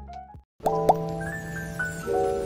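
Background music for the vlog: one piece cuts off for a moment a little under half a second in, then a new, brighter piece starts with two short rising blips and held notes.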